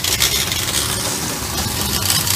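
Concrete pump running steadily while concrete is fed through its hose into the forms.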